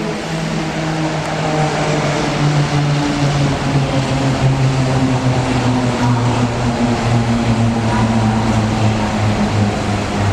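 Shanghai maglev (Transrapid) train pulling into the station alongside the platform, a loud hum that falls steadily in pitch over a rushing hiss as the train slows, growing louder as it draws level.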